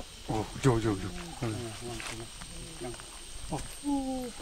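Faint, indistinct voices of people talking away from the microphone, over a thin, steady high-pitched whine.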